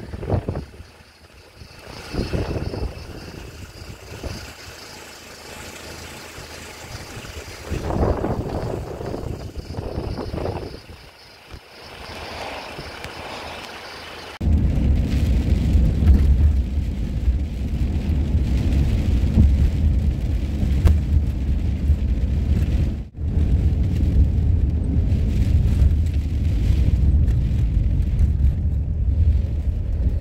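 Wind gusting over the microphone for the first half, in uneven surges. About halfway in it cuts to the steady low rumble of a van driving on a wet road, heard from inside the cab.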